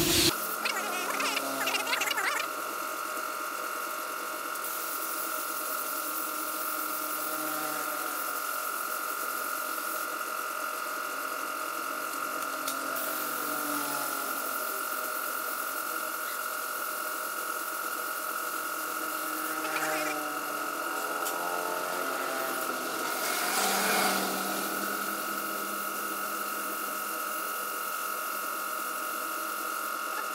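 Compressed-air spray gun spraying paint: a steady airy hiss with a constant whistle-like tone running through it.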